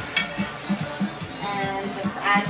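Background music with a steady beat about three times a second; a melody line comes in about one and a half seconds in.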